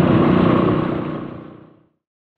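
Yamaha WR250R single-cylinder motorcycle riding along a road, its engine mixed with wind and road noise, steady at first and then fading out over the second half to silence.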